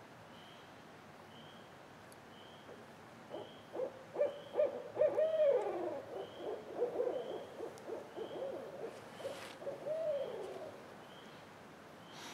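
Barred owls caterwauling: a rush of excited hoots and cackles starts about three seconds in, with a couple of drawn-out hoots that swoop down in pitch, and dies away near the end. A faint high peep repeats about every half second in the background.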